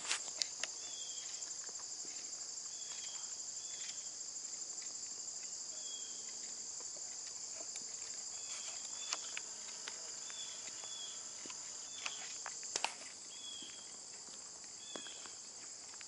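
A steady, high-pitched insect chorus trilling throughout, with short falling chirps coming and going over it and a few soft clicks.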